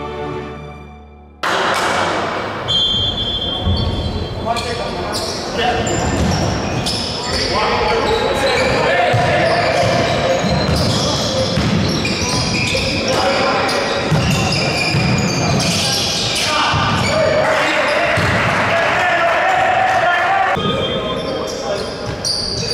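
Live basketball game sound in an echoing gym: a ball bouncing on the hardwood court, with voices of players and spectators calling and shouting. It opens with the last moments of a music jingle, which fades and cuts off about a second and a half in.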